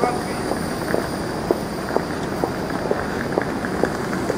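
High heels clicking on cobblestone paving at a walking pace, about two steps a second, over the steady rolling rumble of a suitcase's wheels on the stones.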